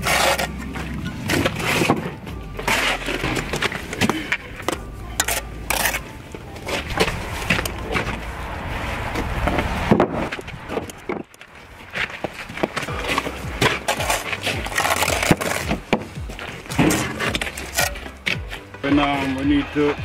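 Steel mason's trowel knocking and scraping on stone veneer and mortar: many short clinks and scrapes as stones are set and trimmed. Music and voices run underneath.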